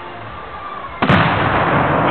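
A Tannerite charge packed inside a teddy bear detonates about a second in: one sudden, loud blast whose boom carries on for about a second.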